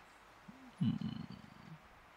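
A man's quiet, low chuckle into the microphone: a brief hum about half a second in, then a second-long run of soft pulses.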